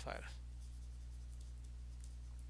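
Faint scratching of a stylus writing on a pen tablet, over a steady low electrical hum.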